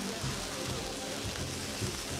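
Low, sustained background music notes under a steady hiss.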